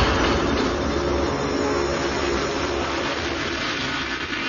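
Beatless breakdown in a drum'n'bass mix: a steady rushing noise over a low rumble, with faint held tones, easing off slightly toward the end.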